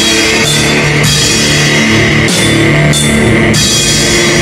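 Instrumental heavy post-rock: sustained distorted electric guitar chords over a drum kit, with cymbal crashes every second or so.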